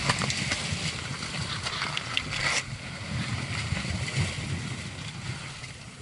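Sea surf washing over the rocks, with wind buffeting the microphone as a constant low rumble. There are a few sharp handling clicks in the first half second, and the hiss of the surf falls away suddenly about halfway through, leaving mostly the wind rumble.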